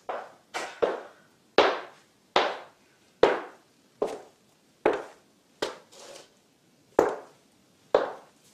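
Footsteps of boots on a hard floor: slow, evenly paced steps about one every second, each a sharp knock with a short echo.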